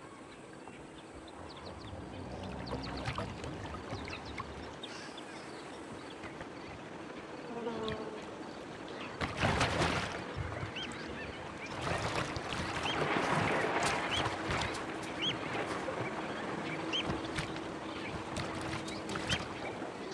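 Wildlife ambience at a carcass by the water: buzzing insects and short bird chirps over a steady background. Louder rough bursts of noise come about halfway through and again a few seconds later.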